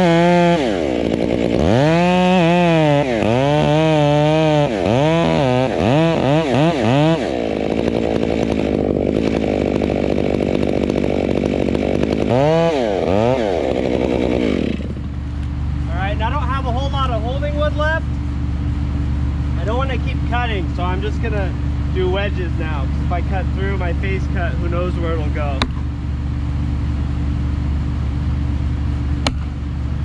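Chainsaw making the back cut of a felling on a Douglas fir: the engine revs up and down repeatedly for about seven seconds, then holds steady at full revs, revs once more, and drops to idle about halfway through. A couple of sharp knocks come near the end as an axe drives a felling wedge into the cut.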